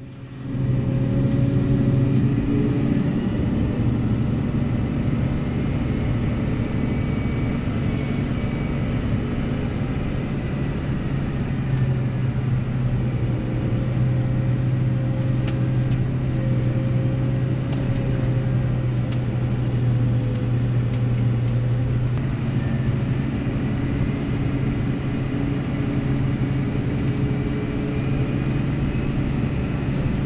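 Case IH Puma 240 CVX tractor's six-cylinder diesel engine running steadily, heard from inside the cab, a low drone with a faint higher whine over it.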